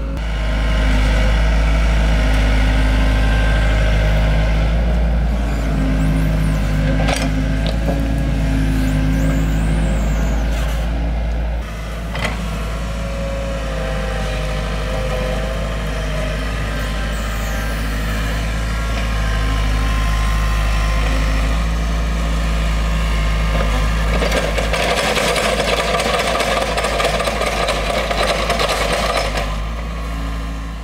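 Mini excavator's diesel engine running steadily while it digs, with a harsher, rougher noise added over the last several seconds.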